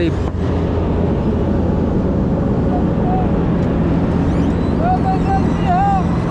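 Heavy diesel engine running steadily at idle, a constant low hum. Faint voices come in during the second half.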